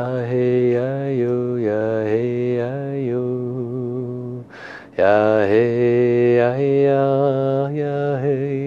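A man's voice chanting a wordless blessing chant, holding long wavering notes that slide up and down in pitch. A little past halfway he breaks off and takes a quick breath, then the chant comes back louder.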